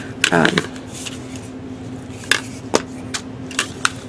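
A few separate sharp plastic clicks and taps as the cap is pulled off a can of Zippo butane fuel and the can and a handheld butane torch are turned over in the hands, ready for refilling.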